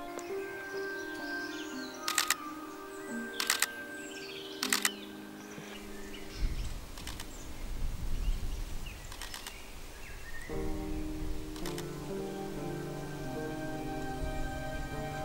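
Camera shutter of a Canon EOS R firing single frames, about six sharp clicks, most of them doubled, a second or two apart, over soft background music.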